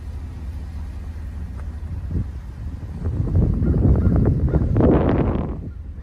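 Ford F-250's 6.2-litre V8 idling as a low, steady rumble while running on compressed natural gas. A louder rush of rustling noise swells up about three seconds in and dies away before the end.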